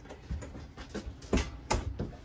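Footsteps and handling bumps as someone moves through a camper trailer: a few soft thumps, two of them close together about one and a half seconds in.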